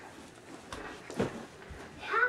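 Rustling of a large blue fabric bag as its drawstrings are pulled, with a short click and then a brief louder swish or bump just past halfway.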